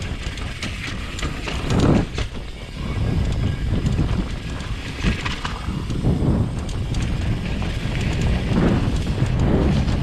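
Downhill mountain bike ridden fast down a dirt trail: a steady rush of wind on the microphone, with tyres on dirt and a rattle of the chain and bike parts over bumps, swelling in several surges.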